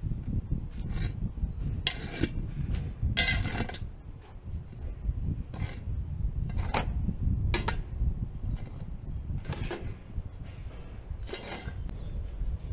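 Broom sweeping loose sawdust across a concrete floor: about eight short, separate scraping strokes, with a steady low rumble underneath.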